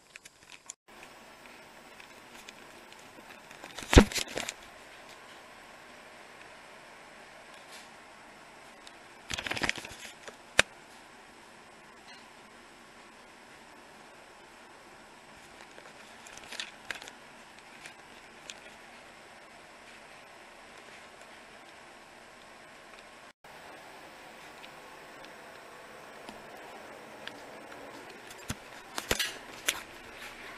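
Quiet indoor room noise with a faint steady hum, broken by a few brief knocks and rustles of handling: the loudest about four seconds in, others near ten seconds, and several near the end.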